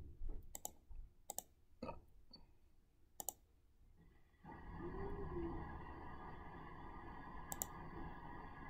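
Computer mouse clicks, a handful of sharp separate clicks in the first few seconds and one more near the end, faint. A steady low hum of background noise sets in about halfway through.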